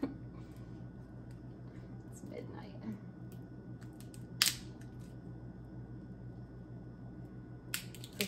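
A single sharp crack about halfway through as a roasted chestnut's shell snaps while being peeled by hand, with a smaller click near the end, over a low steady hum.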